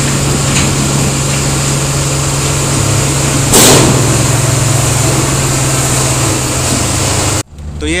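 A tipper truck's diesel engine running steadily at raised revs to drive the hydraulic hoist as the dump body tips, with a short, loud rush about three and a half seconds in as coal slides out. The engine sound cuts off suddenly near the end.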